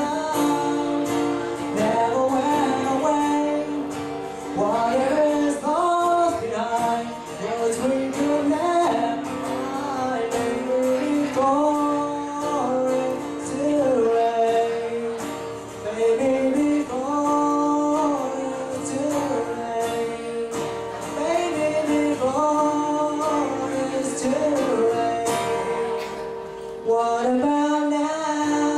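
A man singing solo to his own acoustic guitar, the voice holding long notes that slide up and down between pitches over steady strummed chords.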